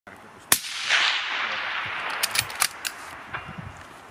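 A single shot from a suppressed Tikka T3 Varmint rifle in .260 Remington about half a second in, its report rolling on and fading over about two seconds, followed by a few sharp clicks.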